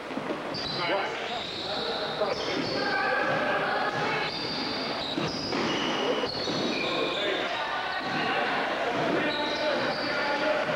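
Indoor pickup basketball game: a ball bouncing on the court, sneakers squeaking, and players calling out, all echoing in a large gym hall.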